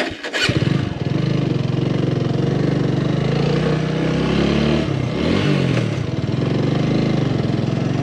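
Motorcycle engine starting about half a second in, then running steadily, its pitch rising and dipping briefly around the middle.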